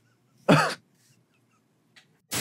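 One short vocal burst from a man, about half a second in, in the manner of a cough or a throat-clearing.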